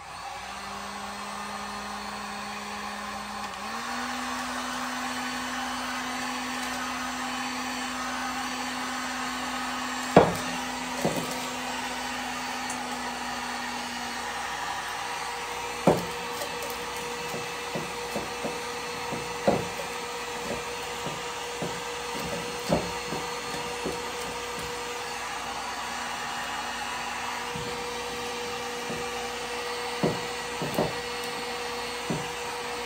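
Electric heat gun blowing steadily as it shrinks shrink wrap around a mason jar. Its motor hum steps up slightly in pitch about four seconds in. Several sharp knocks come through, the loudest about ten seconds in.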